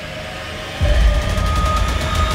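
Trailer sound design: a deep low rumble comes in suddenly just under a second in, joined by rapid, even ticking as the cash-prize counter's digits roll upward.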